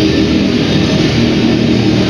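Live heavy metal band playing: distorted electric guitars and bass in a dense, steady wall of sound with held chords.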